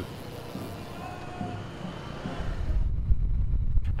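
Outdoor road-course ambience at a cycling race: a steady hiss at first, then a low rumble that grows louder a little past halfway as the high end falls away.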